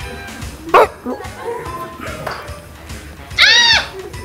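A single short, high-pitched squeal that rises and falls in pitch, about three and a half seconds in, over faint background music.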